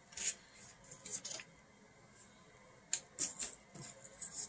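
Paper wrapping crinkling and rustling in a few short bursts as it is pulled off a trading card, with a quiet stretch in the middle.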